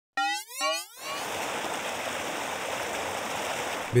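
A short station ident of two quick rising tones, then the steady rush of turbid water pouring from a wastewater treatment plant's outfall pipe into a river, a discharge after heavy rain.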